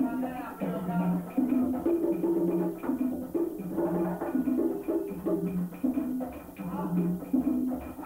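Cuban rumba percussion: conga drums (tumba, segundo and quinto) playing a steady interlocking pattern of low and middle open tones, with sharp wooden clicks from clave and catá sticks over it.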